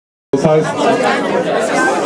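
A man speaking German into a microphone over the chatter of a bar crowd, cutting in abruptly about a third of a second in.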